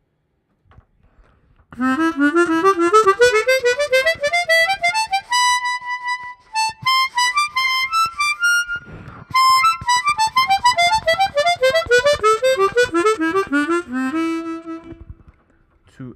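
Chromatic harmonica playing a thirds exercise. After a short silence comes a quick run of notes climbing step by step, a few longer notes at the top, a brief breath, then a run back down, ending on a held low note.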